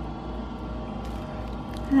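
Home furnace running: a steady low hum with several faint, unchanging tones above it.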